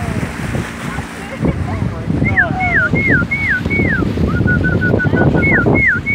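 A person whistling to the dolphins to draw their attention. There are about five quick falling swoops in a row, then a run of short, even notes, then a few more swoops near the end. All of it sits over a steady rush of wind and water at the bow.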